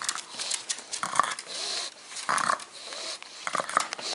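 A pug close to the microphone making short noisy sounds, in three main bursts about a second or more apart.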